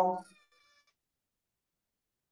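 A man's drawn-out spoken word ending just after the start, followed by a faint, brief high-pitched tone and then near silence.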